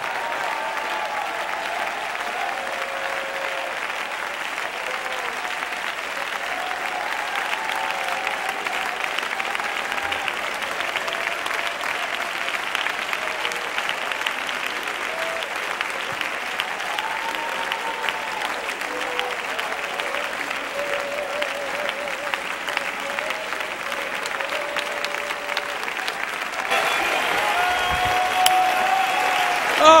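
Large congregation applauding, with voices calling out and wavering above the clapping; the applause swells louder about three seconds before the end.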